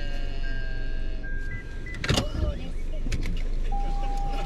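Inside a stopped car: a high electronic tone repeating in half-second pieces, a short sharp clunk about two seconds in, and a brief steady tone near the end, over a low rumble.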